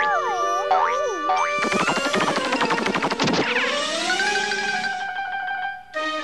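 Cartoon music score with springy sound effects: pitches wobble and slide up and down in the first second and a half, then a busy flurry of quick notes, settling into a held chord that rises and levels off.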